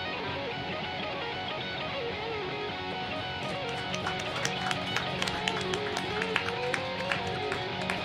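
Electric guitars playing together: held chords under a wavering lead line, with sharp picked notes coming thicker and a little louder from about halfway through.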